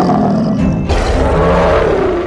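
Big cats roaring, loud and rough: one roar is already sounding, then a second roar comes in about a second in.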